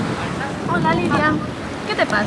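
Beach ambience: a steady wash of surf with wind buffeting the microphone, and a few short, high-pitched calls in the background about a second in and near the end.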